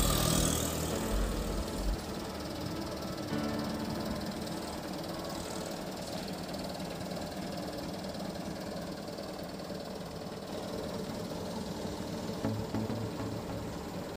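Motor scooter engine passing close by during the first couple of seconds, then a steady, quieter background for the rest.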